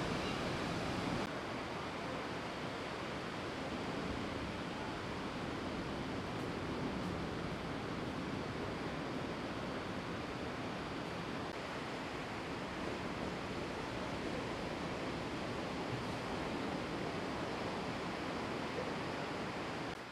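Ocean surf: a steady rush of breaking waves, dropping slightly in level about a second in.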